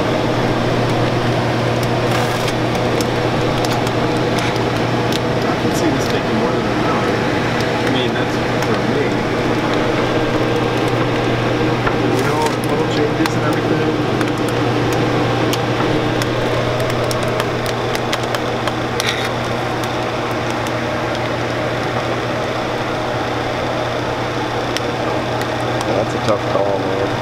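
Chocolate enrobing machine running steadily: a constant motor hum and mechanical whir from the conveyor and chocolate pump, with a few small clicks.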